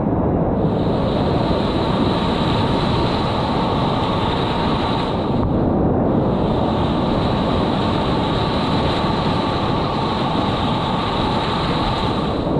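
Whitewater rapids rushing around a kayak, picked up by a camera mounted just above the water: a loud, steady rushing noise heavy in the low end.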